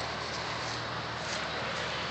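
Steady outdoor background noise with a faint low hum underneath, no distinct event.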